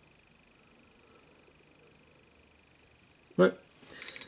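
Near silence: room tone with a faint, steady, high-pitched whine, and no audible sound from the brushwork. A single spoken word breaks in near the end.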